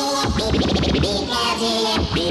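Fast early hardcore (gabber) dance music from a DJ mix, loud and dense, with pitched sounds that rapidly bend up and down over a fast beat.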